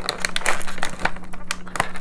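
Toy packaging crinkling and crackling as hands work inside a cardboard box, a quick irregular run of small clicks and rustles.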